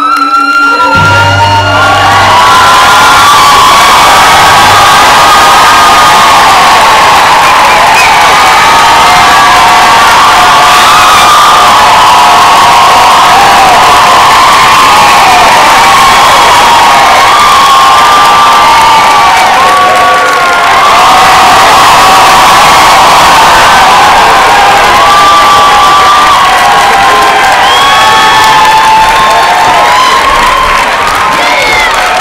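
Live theatre audience cheering and screaming loudly and without a break, many high voices at once. It starts suddenly just after the opening and keeps up at full strength throughout.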